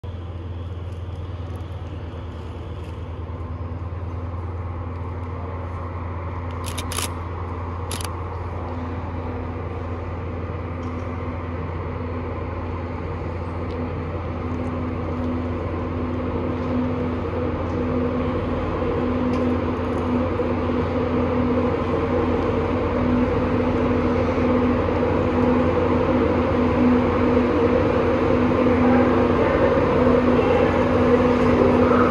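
Class 91 electric locomotive with its InterCity 225 train drawing into the station, a steady hum with a held tone growing gradually louder as it approaches. Two short sharp clicks about seven and eight seconds in.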